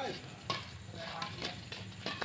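Badminton rackets striking the shuttlecock in a doubles rally: a sharp crack about half a second in, then a few fainter ticks.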